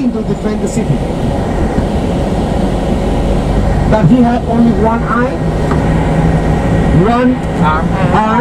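Steady low rumble of a moving bus, heard from inside its cabin. People's voices talk over it, mostly around the middle and near the end.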